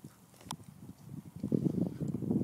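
Two dogs, a big one and a small one, scuffling and grappling in play, with rough throaty dog noises that get louder from about a second and a half in. A brief sharp sound comes about half a second in.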